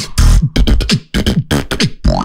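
Vocal beatbox in a techno style into a handheld microphone: a fast, driving rhythm of deep bass kicks that drop in pitch, cut with sharp snare and hi-hat clicks and hisses, imitating a drum machine.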